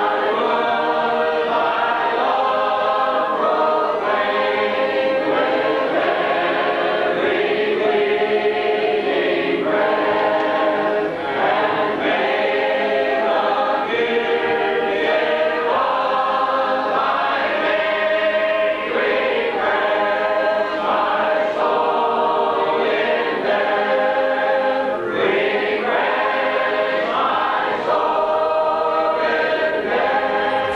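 A congregation singing a hymn a cappella: many voices together in sustained sung notes, with no instruments.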